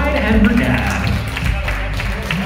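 A man's voice over a PA system calling for applause, over music, as guests start clapping.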